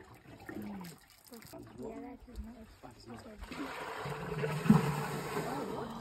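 African elephant drinking through its trunk: from about three and a half seconds in, a rising, gurgling rush of water that sounds just like a toilet being flushed.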